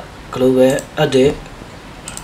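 A voice speaking two short phrases, talking over a screen-recorded software demonstration.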